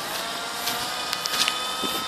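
Small electric motor of a radio-controlled model aircraft whining at a steady pitch, with a few light clicks about a second in.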